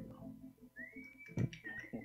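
A faint, thin, high whistle-like tone that slides up about three-quarters of a second in and then holds, dipping briefly near the end, with a soft knock about halfway through.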